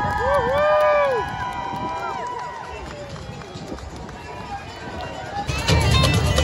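Several voices whooping and calling out in overlapping long held cries that rise and fall, dying away after about three seconds. Near the end, loud amplified music with a heavy beat starts up.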